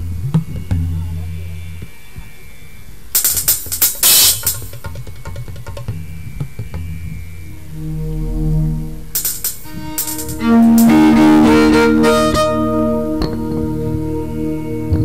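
Live ensemble music: low sustained keyboard-like notes with two bursts of shimmering, cymbal- or chime-like percussion, then a loud held chord swelling in about ten seconds in and slowly fading.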